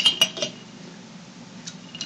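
Metal spoon clinking against the inside of a glass mason-jar mug as a drink is stirred, a quick run of clinks that stops about half a second in. One faint tick follows near the end.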